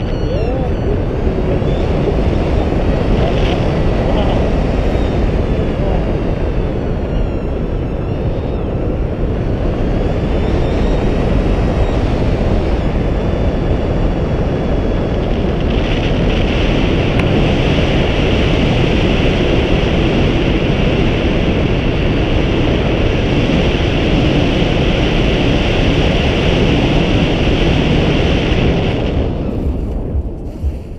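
Loud, steady wind rushing over the microphone of a selfie-stick camera on a tandem paraglider in flight. It drops away suddenly near the end as the glider reaches the landing field.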